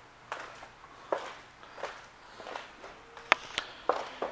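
Footsteps on a hard floor, about one step every three quarters of a second, with a few sharper clicks near the end.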